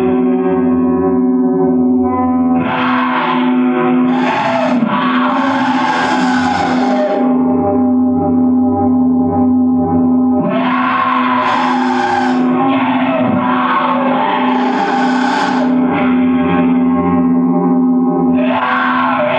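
Metal music from a demo tape: distorted guitar over a steady, pulsing low note, with effects and reverb. Fuller, harsher passages come in about three seconds in and again about ten seconds in, each lasting about five seconds.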